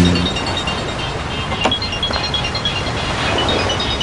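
Soft background music over a steady low ambient hum, with a couple of faint clicks.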